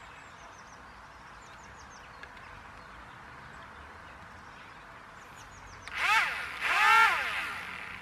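The twin electric motors and propellers of a Sky Hunter 230 RC flying wing, run on a LiPo battery, are throttled up and back down twice in quick succession about six seconds in. The pitch rises and falls each time, the second burst the louder and longer.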